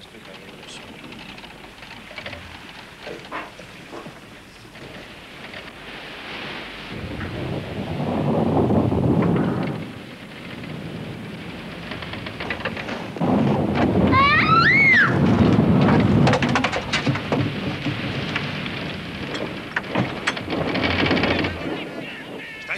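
Rough-sea sound effects: two long swells of deep, rumbling rushing noise, the second running several seconds, with a single gull cry that rises and falls in pitch at its height.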